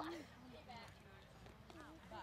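Faint, distant voices of several people talking, with indistinct chatter coming and going.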